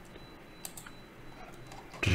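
A few faint, separate clicks of a computer mouse and keyboard over low background hiss.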